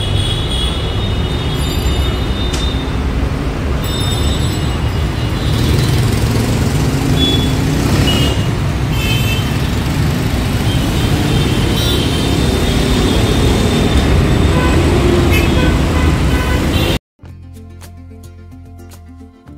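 Steady road traffic noise from a busy city road: a continuous rumble of engines and tyres with a few short high-pitched tones. About 17 seconds in, it cuts off abruptly and quieter background music begins.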